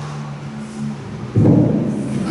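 A sudden low, boomy thump on a table microphone about one and a half seconds in, after a second or so of faint low hum.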